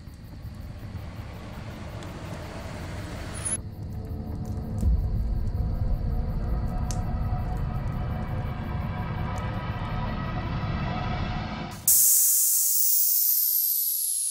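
Film trailer score and sound design: a low rumbling drone with held tones builds, with a deep hit about five seconds in. Near the end a sudden loud hiss breaks in, with a whistle-like tone falling through it.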